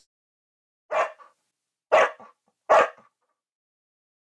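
Three short sound effects about a second apart, one for each button of a like, subscribe and notification animation as it appears.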